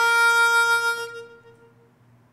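Solo harmonica holding one note that fades away about a second and a half in, closing a phrase.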